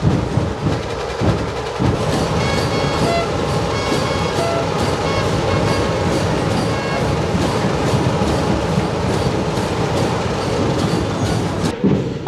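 Loud street-procession drumming: evenly spaced drum strokes at first, then about two seconds in a dense continuous rattle of rapid beats, with short high tones sounding over it.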